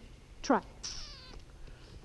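A woman's short voice command to a miniature donkey, "trot", dropping sharply in pitch, followed by a brief high hissing sound as the donkey moves off.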